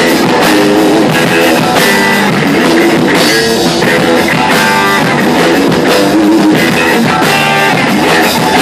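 Live heavy rock band playing loud, with distorted electric guitar and a drum kit.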